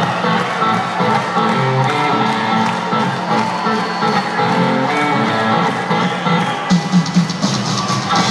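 Live rock trio of electric guitar, bass guitar and drums playing a blues-boogie number, heard loud from within the crowd. About two-thirds of the way in the drums and cymbals hit harder and the sound brightens.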